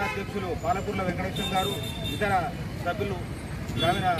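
A man speaking into a handheld microphone, with street traffic noise behind.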